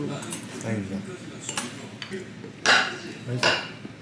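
A spoon scraping and clinking against a bowl as barley rice is mixed with gangdoenjang, with a sharp click about a second and a half in and two louder scrapes near the end.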